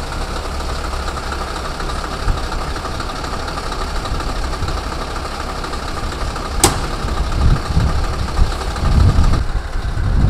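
Heavy-truck diesel engines idling at a recovery, a steady low rumble with a held mid-pitched drone over it. A single sharp click comes about two-thirds of the way through, followed by uneven low rumbling near the end.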